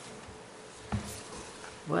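Quiet meeting-room tone with a faint steady electrical hum through the sound system, broken by one sharp tap about a second in; a voice starts just before the end.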